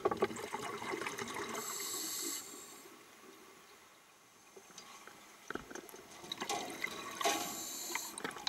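A scuba diver's breathing heard underwater: two rounds of bubbling from exhaling through a regulator, about six seconds apart, with a quieter stretch between them.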